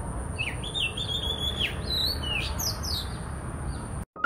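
Oriental magpie-robin singing: a run of varied clear whistled notes, some sliding down and some rising, starting about half a second in. A steady thin high tone runs behind it.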